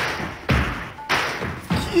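Heavy footsteps at an even walking pace: four thuds a little over half a second apart, each trailing off in a short hiss.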